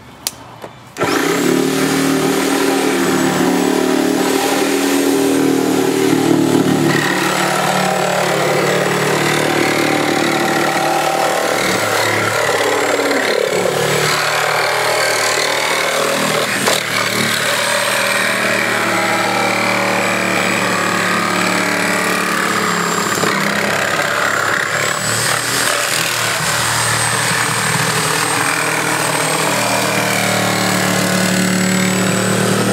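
A power saw starting up about a second in and then cutting steadily, without a break, through a refrigerator's steel cabinet.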